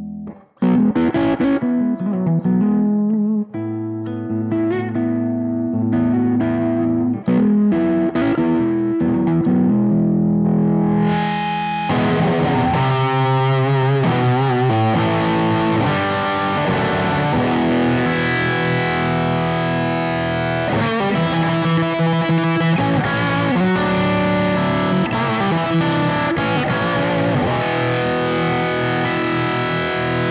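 Gustavsson Bluesmaster Special electric guitar, with a mahogany body and Lollar Imperial humbuckers, played through an amplifier: single notes and chords with short gaps between phrases. About eleven seconds in it becomes fuller and brighter, with denser playing and notes that sustain like crazy.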